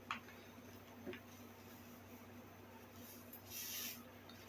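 Mostly quiet room tone, then near the end a brief soft rustling hiss as a seasoning packet is tipped up and its spice mix poured into a stainless steel pot.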